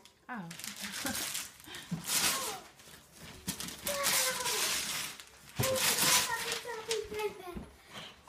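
Gift wrapping paper being ripped and crinkled off a box, in several rustling, tearing bursts, with voices in between.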